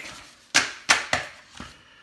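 Three sharp taps about a third of a second apart, then a fainter one, from trading cards being handled against a tabletop.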